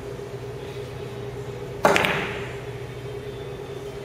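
Pool balls knocking together: one sharp clack about two seconds in, followed by a short rattling decay. A steady low hum runs underneath.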